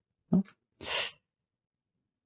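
A man says a short "oh", then about a second in gives a brief breathy exhale.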